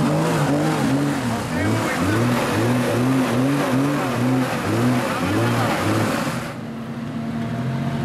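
Jeep Cherokee XJ engine revving hard while a mud tyre spins in loose dirt, throwing it against the wheel arch. The engine's pitch surges up and down about twice a second as the tyre slips and bites, the sign of a vehicle stuck and trying to climb out. About six and a half seconds in, the spraying noise stops and the engine settles to a steadier lower note.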